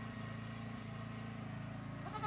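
A steady low mechanical hum, like a running engine, with a couple of faint knocks in the first second.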